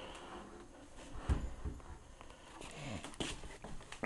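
Faint handling noises as a wooden antique radio cabinet is pulled out from the wall: a few low knocks about a second in, then some scraping and rustling near the end.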